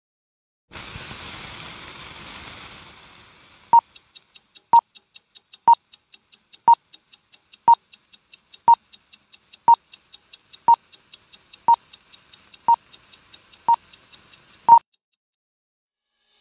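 Film countdown leader sound effect: after a few seconds of hiss, a short high beep sounds once a second, twelve times, over fast, faint ticking. The last beep is the loudest, and then it cuts off suddenly.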